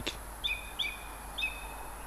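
Song thrush singing in the dark: the same short, clear whistled note repeated three times.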